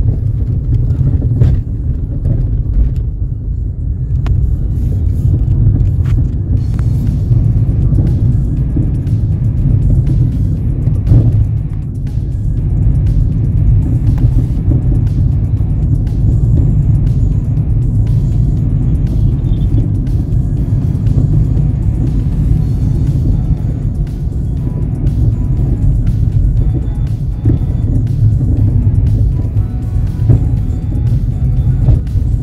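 Steady low rumble of a vehicle driving along a road, heavy in the bass, with music playing underneath.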